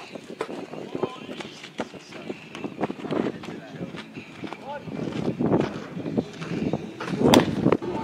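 Open-air ballfield sound: distant voices of players and scattered sharp knocks and pops, the loudest a little before the end.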